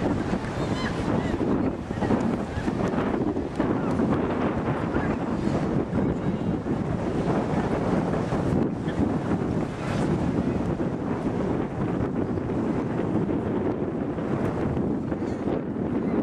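Wind buffeting the microphone over the wash of surf on a beach: a steady rumbling rush with no breaks.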